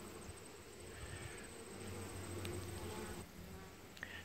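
Honey bees buzzing faintly around the hive boxes, the hum swelling a little in the middle and falling away near the end.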